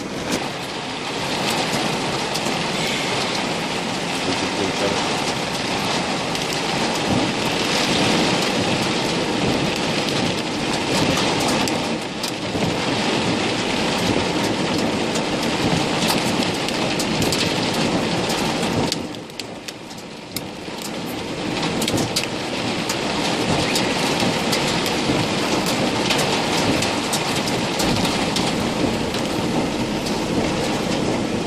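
Hail and rain drumming on a minibus's roof and windows, heard from inside the cabin as a dense patter of many small sharp hits. It eases briefly about two-thirds of the way through, then comes back as hard as before.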